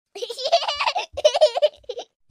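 High-pitched laughter in two bursts, the first about a second long and the second shorter, a laughing sound effect over the intro logo.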